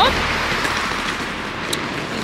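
Road traffic going past: a steady hiss of tyres on the road that slowly fades.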